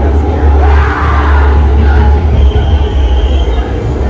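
Loud, steady deep rumble from a haunted attraction's ambient sound effects, with indistinct mid-range effect sounds over it.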